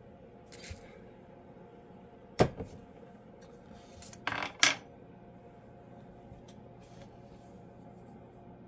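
Small hard objects clicking and clinking on a tabletop: one sharp click about two and a half seconds in, then a quick cluster of clicks around four and a half seconds, over a faint steady hum.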